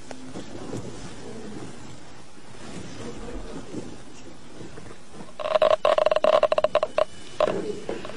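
Gamma radiation counter clicking rapidly over a steady electronic tone for about a second and a half, starting about five seconds in, as it registers radioactive material.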